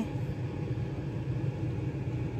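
A steady low rumble, like a machine running in the background, with no distinct events.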